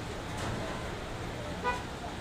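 Steady low hum of a tractor-driven wheat thresher and its tractor running, with one short horn-like toot near the end.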